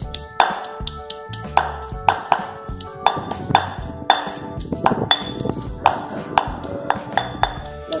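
Stone pestle pounding garlic in a granite mortar, with sharp thuds at about two a second, over background music with steady held notes. The garlic is being pounded first, the start of a curry paste.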